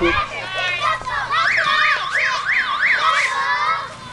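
Spectators shouting and cheering at a football kickoff, with a siren-like wail rising and falling about five times through the middle.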